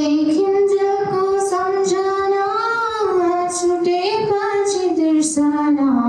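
A young woman singing solo without accompaniment, in long held notes that glide gently from pitch to pitch.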